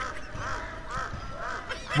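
Birds calling in the background: a quick run of short calls, about four or five a second.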